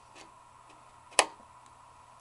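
A quarter-inch guitar cable plug being pushed into the effects-loop send jack of a Boss GT-8 multi-effects unit, seating with one sharp click about a second in.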